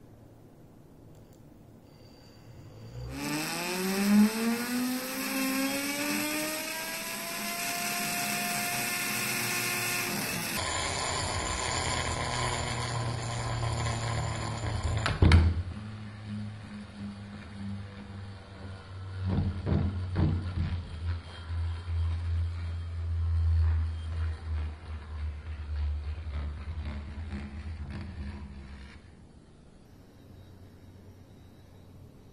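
Small 12 V DC motor salvaged from a car CD drive, spinning a metal gyroscope flywheel: it starts about three seconds in with a steeply rising whine that levels off high and steady. After a sharp click past the middle, a lower rattling hum with irregular knocks from the spinning gyroscope runs on and fades out near the end.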